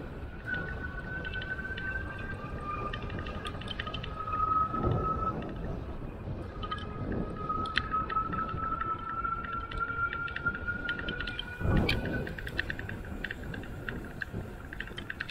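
Aventon Level e-bike's rear hub motor whining at a thin, steady pitch in long stretches, creeping slowly higher, over wind and tyre noise. Scattered light ticks and a few dull thumps, the loudest near the end.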